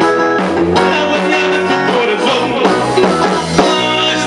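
A live rock and roll band playing a 1960s-style number, with guitar and drum kit keeping a steady beat.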